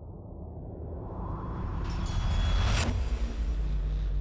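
Logo-intro sound design: a deep rumble swelling steadily, topped by a rising whoosh that cuts off sharply just before three seconds, leaving a low drone.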